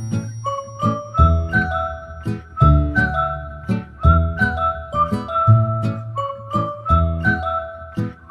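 Background music: a high melody of held, ringing notes over bass notes and a steady beat.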